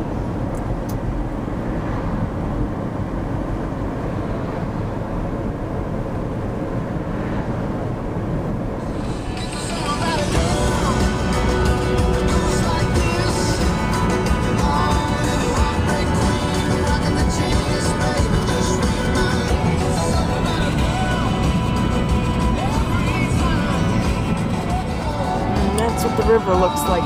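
Steady road and engine noise inside a moving car's cabin. About nine seconds in, music with a voice comes on and plays over the road noise.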